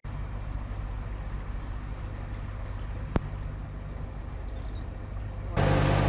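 Narrowboat's diesel engine running steadily underway, a low even drone, with a single sharp click about halfway through. The sound grows louder just before the end.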